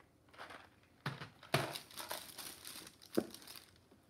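Gift wrapping crinkling and rustling as it is handled, in a few short spells, the sharpest about a second and a half in and one more shortly before the end.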